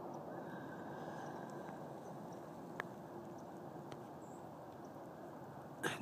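Quiet, steady background noise with two faint clicks, about three and four seconds in.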